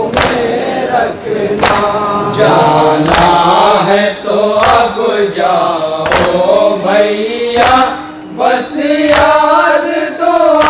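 Men chanting a Shia noha (lament) together into microphones, with sharp chest-beating (matam) strikes about every three-quarters of a second keeping the rhythm.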